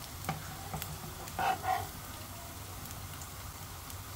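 Potato and rice-flour patties sizzling as they shallow-fry in oil in a nonstick pan, with a metal spatula clicking and scraping against the pan as it lifts a patty. The loudest scraping comes in two short strokes about one and a half seconds in.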